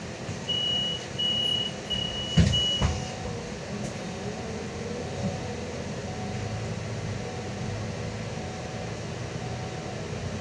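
Inside a Solaris Urbino 18 III articulated bus: four short, high, evenly spaced beeps and two heavy thumps in the first three seconds. Then the bus runs with a steady low hum while it waits at a red light and moves off.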